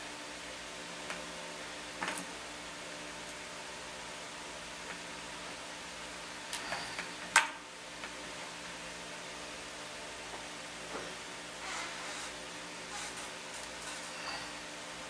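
Scattered soft handling noises as chunks of clay are pulled off a sculpture's armature, over a steady low room hum; a sharp knock about seven seconds in is the loudest sound.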